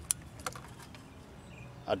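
A few light clicks from a small round push-button switch being pressed, with its wires on multimeter probes; the meter's continuity beep is silent, so the switch has broken the circuit.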